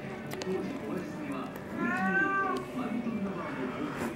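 A single drawn-out call about two seconds in, rising then falling in pitch, over a low murmur of voices.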